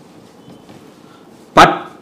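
A dog barks once, a sudden loud bark about one and a half seconds in that dies away quickly.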